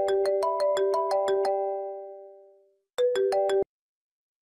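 Mobile phone ringtone playing a quick melody of ringing notes, about seven a second. It repeats and is cut off abruptly partway through the second round as the call is picked up.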